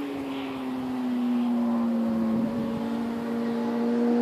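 Sport motorcycle engine approaching from a distance, its steady note growing louder, with a brief dip about two and a half seconds in.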